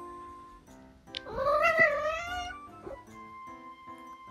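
A Munchkin cat lets out one long meow, rising then falling, about a second and a half in. Soft background music plays throughout.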